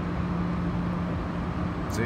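Steady mechanical hum and rushing noise, with a low tone that weakens about one and a half seconds in.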